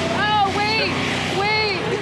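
People talking over the steady low hum of a Gator utility vehicle's engine running.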